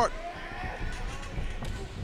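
Dull thuds of wrestlers' boots and bodies on the padded ring canvas during a grapple, low under faint arena background.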